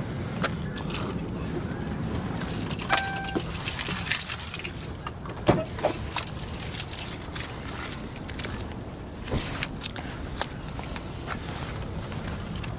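A bunch of keys jangling for about two seconds, with a short electronic beep partway through. A few sharp clicks and knocks follow over a steady low rumble.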